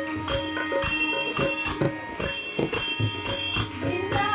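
Small hand cymbals struck about twice a second in a steady rhythm, each strike ringing on, over group devotional singing.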